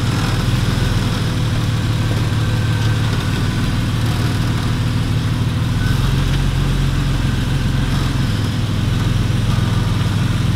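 Jeep Wrangler Rubicon's engine running at low revs as it crawls over the trail, steady, with a slight change in pitch about six seconds in.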